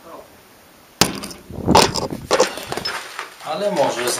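Footsteps and loose debris on a rubble-strewn concrete stairwell: a few sharp knocks and scrapes starting suddenly about a second in, with a voice near the end.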